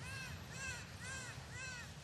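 Harsh bird calls, caw-like, repeated about twice a second over a low rumble.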